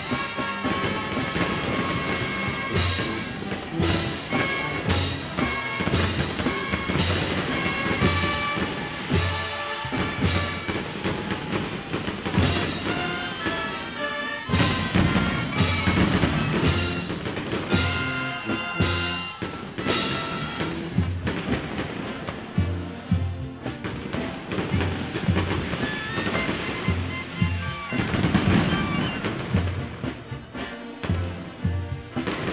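Procession band music: held notes from wind instruments over a regular bass drum beat, about one stroke a second, with frequent sharp crashes.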